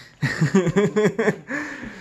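A man laughing in a quick run of short bursts, ending in one longer falling sound near the end.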